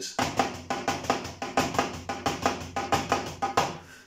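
Drum strokes on a Roland electronic drum kit: a steady run of several strokes a second with a regular pattern of louder ones, the pataflafla rudiment as played on the kit.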